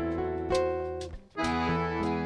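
Scandalli piano accordion playing a chamamé melody over sustained bass notes, with acoustic guitar and cajón accompaniment. The music breaks off for a moment just past the middle, then carries on.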